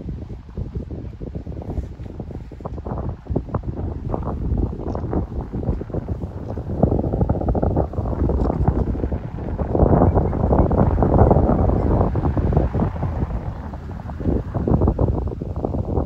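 Wind buffeting the microphone: an uneven rushing noise that comes and goes in gusts and is loudest for several seconds in the middle.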